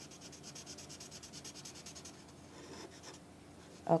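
Felt-tip marker scrubbing on paper as a small area is coloured in: quick back-and-forth strokes, about six a second, for the first two seconds, then a few fainter strokes near three seconds.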